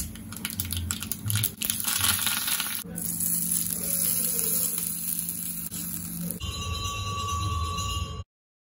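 Mustard seeds crackling and popping in hot oil in a small iron tempering pan, a dense sizzle for about the first three seconds. It then gives way to a steady low hum with hiss, and a steady mid-pitched tone sounds near the end.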